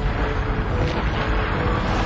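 Science-fiction space-battle sound effects: a dense rushing rumble of starships flying past and explosions, surging in waves, with orchestral score held faintly underneath.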